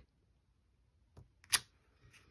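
Mostly quiet, with a faint tap a little over a second in and one sharp click about a second and a half in, from a clear acrylic stamping block being handled on the work table.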